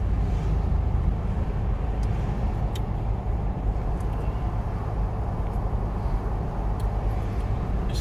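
Steady low road rumble of a moving car, heard from inside the cabin: engine and tyre noise with no change in speed.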